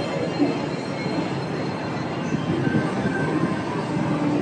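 Tomorrowland Transit Authority PeopleMover cars running along the elevated track overhead, a steady rolling rumble.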